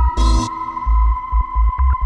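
Electronic dance music from a deep house / tech house DJ set: a heavy, repeating kick drum, a hissing clap-like hit shortly after the start, and a steady high synth tone held throughout.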